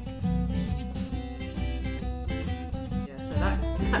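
Background music with a strummed acoustic guitar, playing steadily.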